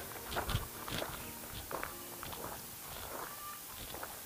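Footsteps of two people walking on a dirt road, one of them in flip-flops: short, uneven steps, a few a second.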